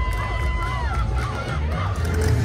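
Crowd cheering and children shouting over music with a heavy bass beat. A long held high voice note breaks off about a second in.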